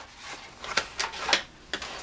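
Handling noise from a stiff kraft-paper journal cover being shifted and closed on a scoring board: several short, light taps and rustles.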